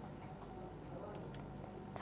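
Quiet room tone with two faint, short ticks a little past the middle: a computer mouse clicking the Superscript button on the word-processor toolbar.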